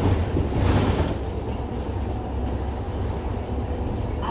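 Cabin noise inside an Iveco Urbanway 12 Hybrid city bus under way: a steady low rumble from the drivetrain and road, with a brief louder rush of noise about half a second in.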